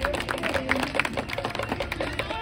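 A rapid, irregular run of sharp clicks or taps, several a second, with faint voices behind.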